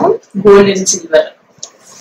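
A woman speaking for about a second, then a much quieter stretch.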